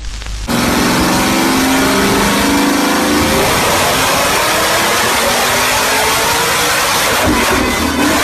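A car engine running hard at full throttle on a chassis dynamometer. It is loud throughout, and its pitch climbs steadily over several seconds as it is run up through the revs.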